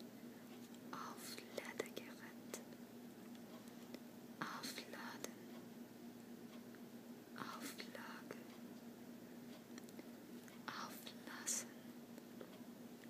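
Whispered words close to the microphone, in four short bursts a few seconds apart, over a faint steady hum.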